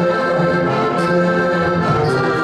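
Styrian diatonic button accordion (Steirische Harmonika) playing a folk tune in held chords, over a brass bass horn's bass line. A light percussive stroke falls about a second in.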